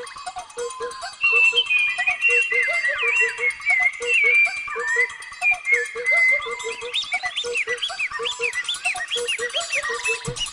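Animated-film trailer soundtrack: music with a quick, steady pulse, joined about a second in by many chirping, gliding bird calls that grow busier and louder.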